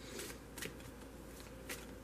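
Tarot cards being shuffled by hand, faint: a short soft rustle of card stock just after the start, then two light clicks of cards, one in the first second and one near the end.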